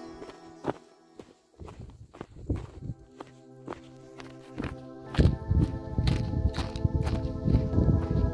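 Footsteps in snow at a walking pace, about two a second, growing louder about five seconds in, over background music with sustained tones.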